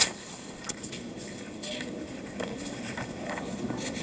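Contract papers being handled and signed: pages rustling and being turned, with scattered sharp clicks and snaps, the loudest right at the start. A low murmur of voices runs underneath.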